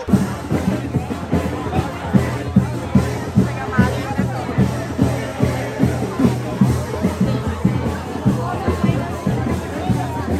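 Carnival street-band music with a steady thumping drum beat, a little over two beats a second, over the chatter of a dense crowd.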